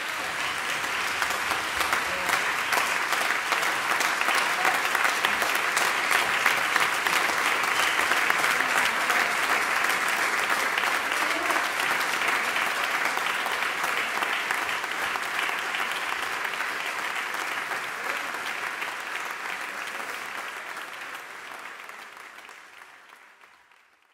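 Applause from the concert audience and band players, a dense clapping that swells over the first few seconds and fades away near the end.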